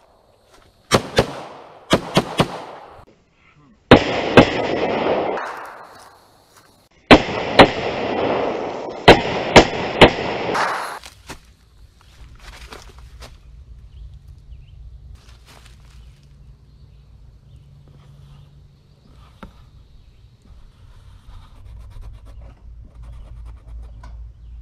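Pistol fired in a string of sharp shots over roughly the first ten seconds, some in quick pairs, each followed by a noisy ringing tail. A low, steady rumble of handling noise follows.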